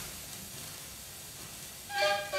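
Stylus running in the lead-in groove of a record on a turntable: a steady surface hiss with a few faint ticks. The orchestra comes in at the very end.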